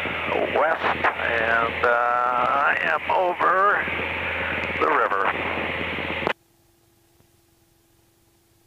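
Aircraft radio voice transmission heard over the cockpit intercom, narrow and tinny, over a low steady hum. It cuts off abruptly about six seconds in, leaving near silence with a faint steady tone.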